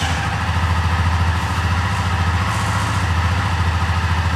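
Honda CB250 Twister's single-cylinder engine idling steadily just after a cold start, warming up.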